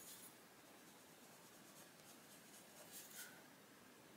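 Faint scratching of a Castle Art Soft Touch coloured pencil shading across paper in small strokes, barely above room tone.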